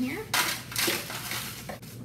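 Buttered cookie crumbs scraped out of a mixing bowl with a wooden spoon and dropping into a disposable aluminium foil pan: two loud scrapes about half a second apart in the first second or so, then quieter handling.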